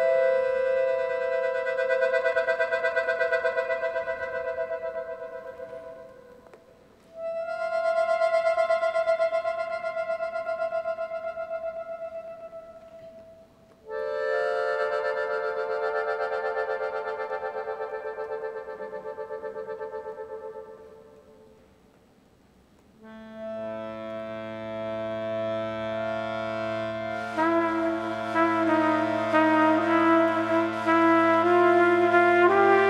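Accordion playing long sustained chords that swell and fade away, three times, with short pauses between. About 23 seconds in, a deeper chord with bass notes begins, and near the end a trumpet joins in.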